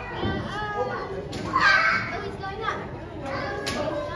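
Children's voices and chatter from visitors, with one child's loud, high call about one and a half seconds in.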